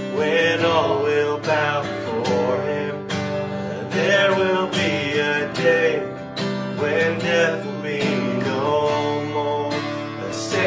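Acoustic guitar strummed in a steady rhythm while men's voices sing a slow worship chorus over it.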